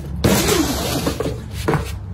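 A heavy canvas carry bag being handled and tipped down onto concrete: a burst of fabric rustling, then a couple of short knocks near the end.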